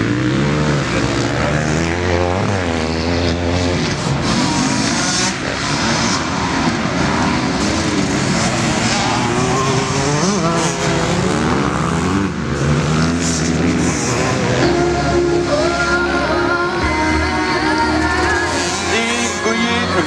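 Several motocross bikes running hard past one after another, the engine pitch rising and falling as the riders rev through the gears.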